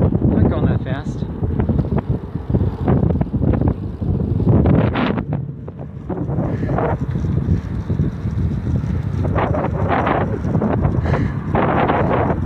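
Wind buffeting the microphone of a phone carried on a moving bicycle: a loud, gusty rumble that rises and falls, with brief indistinct voices breaking through now and then.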